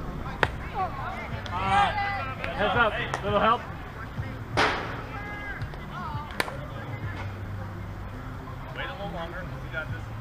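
A sharp crack about half a second in, typical of a bat striking a softball, followed by shouting voices and a short loud burst a little before five seconds. Another sharp knock comes around six seconds.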